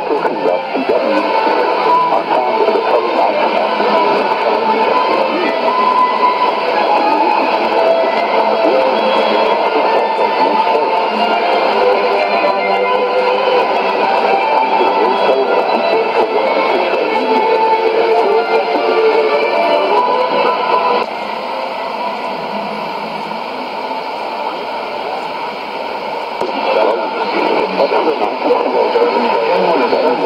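Shortwave AM broadcast of the South African Radio League's Afrikaans programme on 17760 kHz, heard through a Sony ICF-2001D receiver's speaker, playing guitar music with the narrow, thin sound of AM reception. It drops somewhat quieter for about five seconds, two-thirds of the way through.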